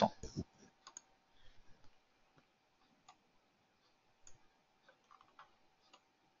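Faint computer mouse clicks, a few short isolated clicks scattered over a few seconds, over a faint steady hum.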